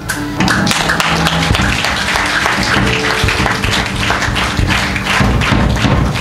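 Live church worship music: an electronic keyboard holding chords over a fast, busy percussive beat.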